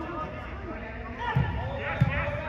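Players' voices calling out on an indoor soccer pitch, with two dull thumps, one about one and a half seconds in and one at the very end.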